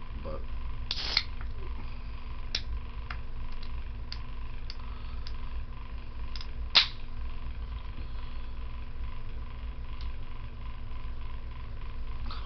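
Scattered light clicks and knocks, as of small objects being handled, with a short rustle about a second in and the sharpest click near the middle, over a steady low hum.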